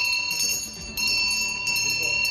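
Small brass hand bell shaken repeatedly, ringing with a clear, high, sustained tone that is renewed with each strike, dipping briefly just before one second in. The ringing marks the position of the balloon the bell is tied to, so that a blindfolded knife thrower can aim by sound.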